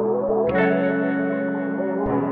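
Melodic trap music loop: short rising notes, then a new sustained chord entering about half a second in and ringing on.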